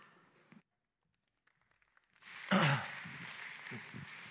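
Near silence for about two seconds, then a man's short, breathy vocal sound with falling pitch into a handheld stage microphone, followed by a faint hiss.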